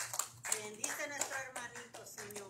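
Hand clapping from a congregation that thins out and fades, with indistinct voices talking over it.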